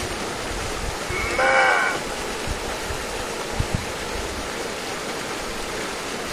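A person's voice: one drawn-out, high-pitched exclamation about a second and a half in that rises and then falls. It sits over steady outdoor background noise, with a few faint low knocks later.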